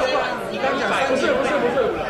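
Several people arguing heatedly at once, their voices overlapping into chatter.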